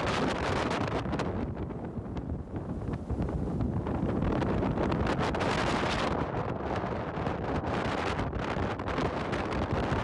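Wind buffeting the microphone on a moving boat, a steady rumbling rush with gusty crackles, over the sound of water and the boat underway. It eases briefly about a second and a half in, then picks up again.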